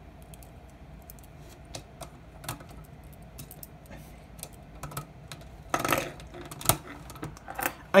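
Small plastic parts of a Machine Robo Mugenbine toy robot clicking and rattling as they are handled and plugged onto the figure, with a brief louder rustle about six seconds in and a sharp snap just after.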